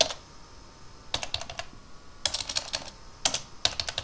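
Typing on a computer keyboard: three short runs of quick key clicks after a quiet first second.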